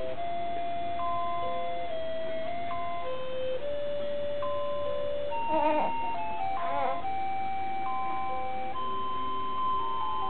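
Electronic lullaby tune from a crib's musical mobile: a slow melody of single, clear, chime-like notes held one after another. About halfway through, two short wavering vocal sounds rise over it.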